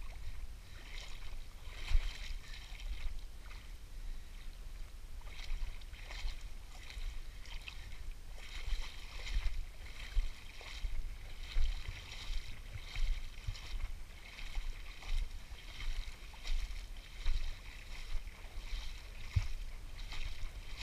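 Repeated sloshing and splashing of shallow river water, coming in short bursts about once or twice a second, over a low wind rumble on the microphone.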